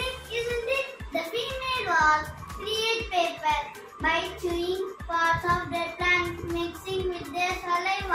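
A young boy speaking over quiet background music with a steady low bass line.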